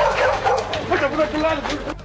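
A dog barking over men's voices, with a noisy background.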